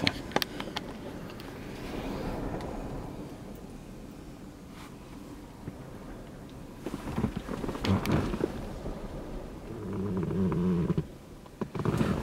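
Wind buffeting the microphone, an uneven low rumble, with a few sharp handling knocks about two-thirds of the way in.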